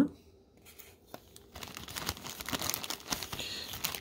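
Clear plastic zip-lock bag crinkling as it is handled, a crackly rustle with small clicks that starts about a second and a half in.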